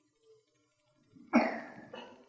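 A person coughing: one loud cough about a second and a half in, fading quickly, with a smaller second cough just after.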